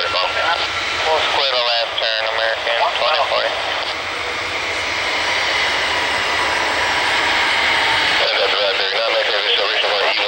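Jet engines of an Embraer E-jet at takeoff power, a steady jet noise with a faint slowly rising whine. Air traffic control radio voices come over it in stretches near the start and again near the end.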